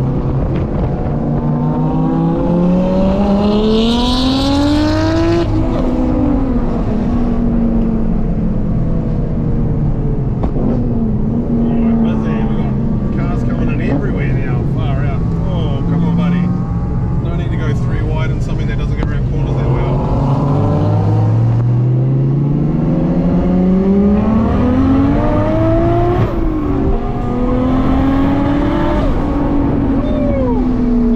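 Car engine heard from inside the cabin, pulling up through the revs over a few seconds, then dropping back as the driver shifts or lifts. It holds steady for a stretch and climbs again twice near the end.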